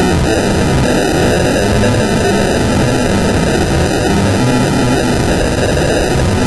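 Harshly distorted, effect-processed cartoon audio: a loud, steady wall of noisy cacophony with a hollow, filtered tone, in which no music or voice can be made out.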